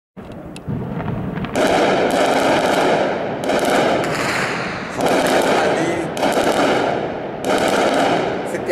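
Heavy automatic gunfire in long, dense bursts. After a few scattered cracks, the first burst cuts in about a second and a half in, and four more follow at intervals of one to two seconds.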